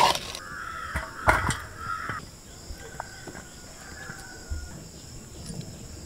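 Crows cawing: a harsh call from about half a second in, lasting under two seconds, then fainter calls later. A single sharp knock about a second in, and a steady high-pitched insect drone underneath.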